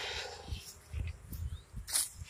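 Soft, irregular low thuds of footsteps and hand-held camera handling while walking, with a brief rustle near the end.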